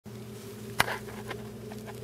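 A steady low hum, with one sharp click a little under a second in and a few fainter ticks after it.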